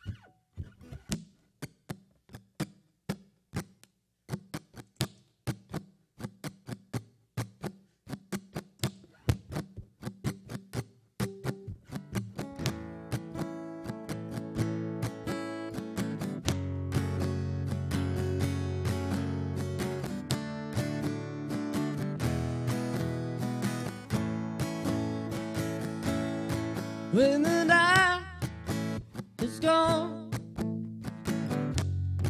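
Fender acoustic guitar playing: it opens with a run of short, evenly spaced percussive strikes. About twelve seconds in, sustained picked notes and chords fill in and build into a fuller, layered sound. Near the end a loud note slides sharply upward in pitch.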